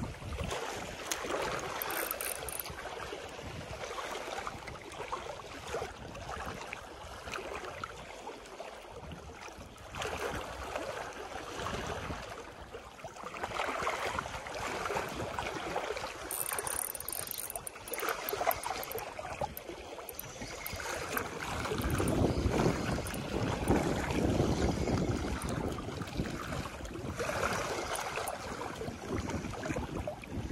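Sea water sloshing and lapping with wind buffeting the microphone, growing louder for a few seconds about three-quarters of the way through.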